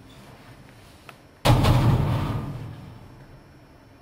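A door slammed shut once, a sudden loud bang about a second and a half in that rings on and fades over about a second, with a light click just before it.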